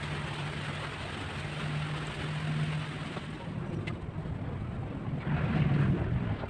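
Steady rushing background noise with a low steady hum that weakens after about three seconds, and a few faint clicks later on.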